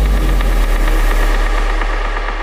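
Electronic dance track's closing bass drone: a deep sustained bass note under a noisy wash, slowly fading, its treble dimming toward the end.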